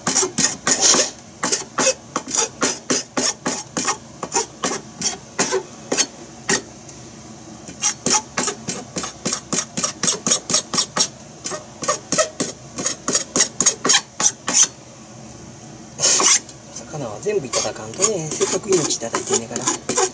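Kitchen knife scraping over cutlassfish on a cutting board in quick repeated short strokes, about three a second, with two brief pauses.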